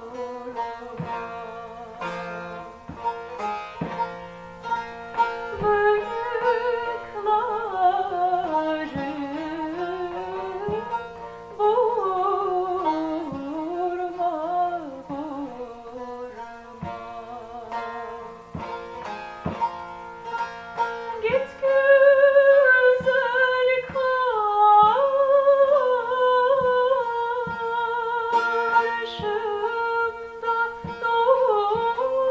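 A woman singing a Turkish folk song in a sliding, ornamented line, accompanied by a bağlama (long-necked saz) plucked in a regular rhythm. Her voice grows louder about two-thirds of the way through.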